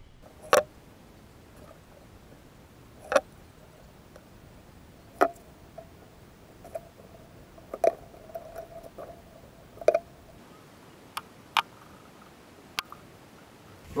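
Hot-gluing foam blocks onto a fibreglass mould: sharp, isolated clicks and taps every one to three seconds, from the glue gun being worked and the blocks being pressed on.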